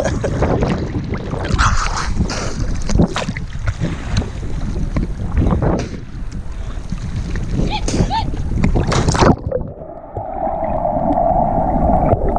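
Sea water slapping and splashing against a floating action camera, with wind on its microphone and laughter at the start. About nine seconds in, the sound turns suddenly muffled as the camera goes under the surface, and a jumper's plunge is heard as rushing bubbles underwater.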